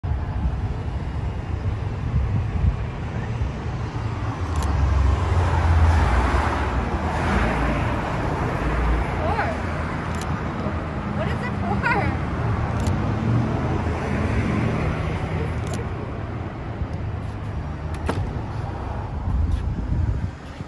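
City street traffic noise, a steady rumble of passing cars that swells about five seconds in, with a few sharp clicks.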